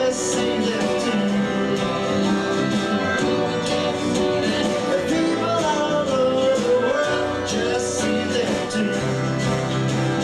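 Live country-rock band playing an instrumental break: guitars over bass and drums, with a lead line that bends between notes.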